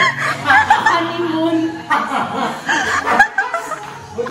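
A woman laughing in several bursts of giggling.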